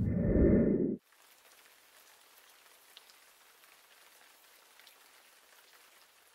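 A loud, low rumble of microphone handling noise for about the first second, cut off suddenly, then a faint steady hiss.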